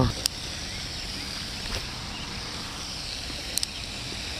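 Quiet outdoor background: a steady low hiss, with one faint click about a quarter second in and a couple of faint ticks near the end.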